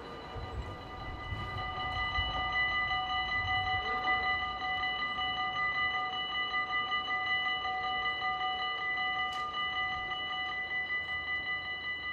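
Dutch level-crossing warning bell ringing rapidly and without a break, the signal that a train is coming and the barriers are closed. A low rumble of idling road traffic runs under it for the first few seconds.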